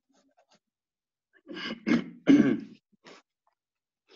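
A person's short non-speech vocal bursts, like a sneeze or throat clearing. They come in several quick loud bursts from about a second and a half to three seconds in.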